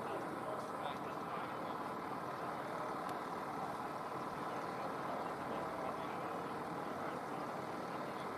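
Small engine of a walk-behind pitch machine running steadily, heard from a distance.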